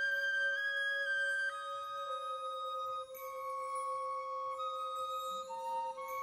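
Symphonic wind band music: a slow passage of held woodwind notes that change every second or so over one long, steady lower note.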